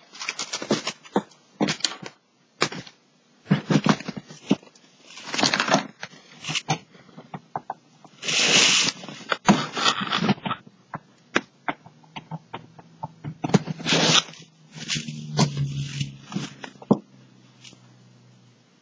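Handling noise while a device is plugged in to charge: scattered clicks, knocks and rustling. A short hiss comes about halfway through, and a low hum is heard near the end.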